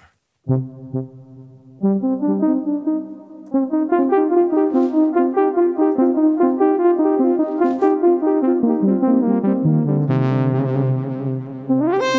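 Brass-like synthesizer notes played through a Maschine+ beat delay set to an eighth note (2/16) at 70 BPM. The echoes fill in an even, pulsing pattern of notes that steps up and down, and a lower note comes in near the end.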